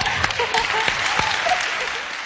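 Studio audience applauding, with people laughing over it.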